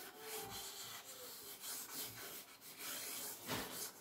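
Thick stick of charcoal rubbing and scratching across paper on a drawing board, in faint, uneven strokes.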